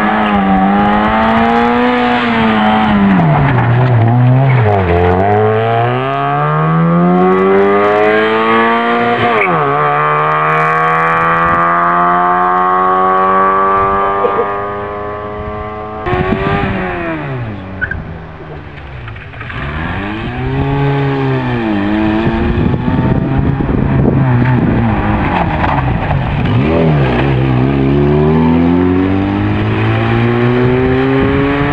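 Rally car engines revving hard. The pitch climbs, drops back at each gear change or lift, and climbs again, over and over. About halfway through the sound cuts off abruptly and another run starts, revving up and down several times.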